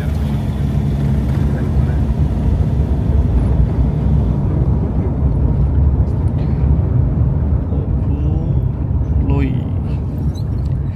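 Steady low rumble of a car travelling on a paved road: engine and tyre noise.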